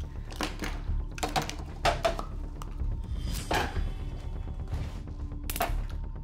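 Tea being made at a counter: a string of short knocks and clinks from a metal kettle, ceramic mugs and a spoon being handled and set down, over a low music score.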